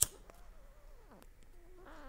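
A sharp click from a briar tobacco pipe being handled at the mouth, followed by faint, wavering squeaks that glide down in pitch and rise again near the end.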